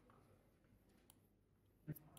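Near silence with a few faint, short clicks, the sharpest just before the end.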